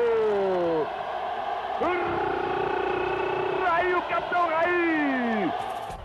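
A football TV commentator's drawn-out goal cry: several long held shouts, each sliding down in pitch, over steady stadium crowd noise.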